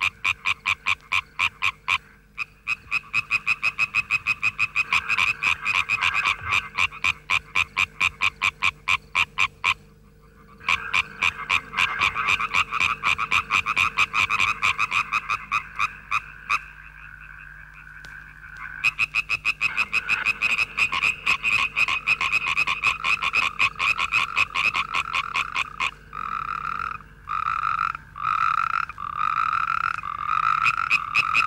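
A chorus of European tree frogs calling: several males overlapping in rapid trains of short pulses, with brief pauses about ten and seventeen seconds in. In the last few seconds the pulses come in slower, separate bursts.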